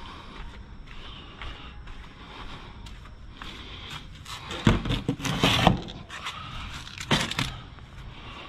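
The lid of a large commercial waste bin being opened: a burst of clattering knocks with a short ringing about halfway through, then another sharp knock a couple of seconds later.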